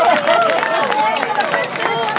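Audience clapping in irregular claps, with voices calling out over it.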